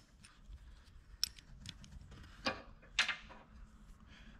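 Faint metal clicks as an open-end wrench, a nut and a bolt are handled while the nut is started on the bolt. There is a light tick about a second in, then two louder clinks about half a second apart near the end.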